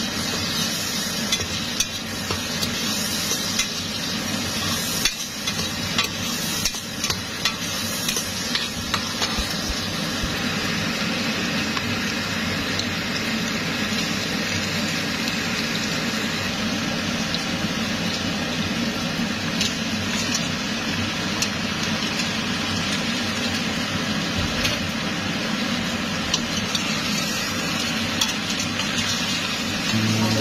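Chopped onion, garlic and red bell pepper sizzling in oil in a stainless steel pot, steady frying throughout. A metal spoon stirs and scrapes against the pot, with frequent clicks and knocks in the first ten seconds or so.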